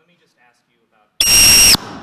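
A sudden, very loud, high-pitched electronic squeal from the hall's sound system, about half a second long, starting and cutting off abruptly. It is a fault in the microphone or PA system, after which the microphone is cut.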